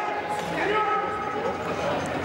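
Players' voices calling out across an echoing indoor sports hall, with a ball now and then thudding on the wooden court.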